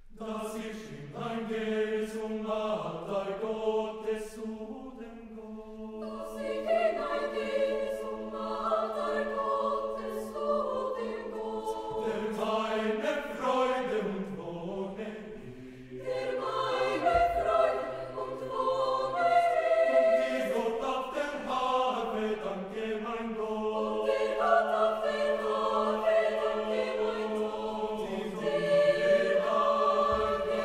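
Large mixed choir singing, the low voices holding one steady note underneath while the upper parts move above it.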